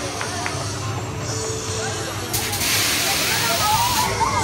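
A loud burst of hissing air that starts suddenly a little past halfway and stops about a second and a half later, typical of an amusement ride's pneumatic system venting. Crowd chatter and riders' voices run underneath.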